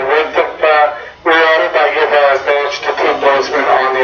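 Speech only: one voice talking almost without a pause.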